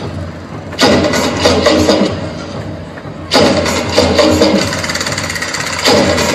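Loud recorded dance music with a steady bass. The full band comes in about a second in and again just past three seconds, with thinner, quieter stretches between.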